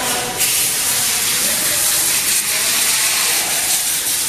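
A nozzle hissing steadily, loud and high, from about half a second in, while the removed CVT transmission oil pan is cleaned.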